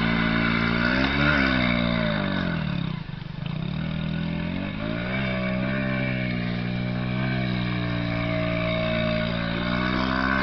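A vehicle engine running, its pitch rising to a peak about a second in, falling to a low near three seconds, then climbing again around five seconds and holding fairly steady.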